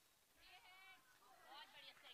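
Near silence, with faint distant voices calling out twice.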